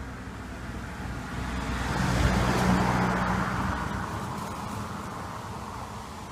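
A motor vehicle passing by: a low engine hum with a rush of noise that swells to a peak about two and a half seconds in and then fades away.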